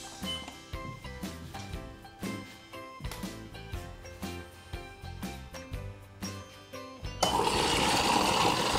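Background music; about seven seconds in, an espresso machine's steam wand starts hissing steadily and louder into a steel frothing pitcher, heating a mixture of milk, liquid sugar and cocoa.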